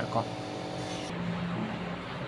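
A steady low hum, like a small motor running, after a brief spoken word at the start.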